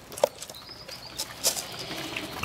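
Sparse clicks and knocks from a pig being fed out of a plastic bucket, with a faint bird chirp a little after half a second in.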